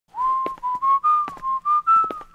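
A man whistling a tune: short held notes with small slides between them, climbing slowly in pitch.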